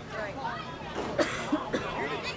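Indistinct chatter of distant voices, with a person coughing about a second in.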